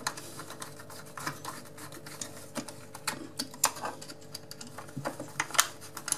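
Small screwdriver tightening the screws of a plastic light switch faceplate: irregular light clicks and scrapes of the blade turning in the screw slots.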